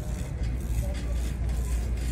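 Shopping cart rolling across a smooth concrete store floor: a steady low rumble from the wheels.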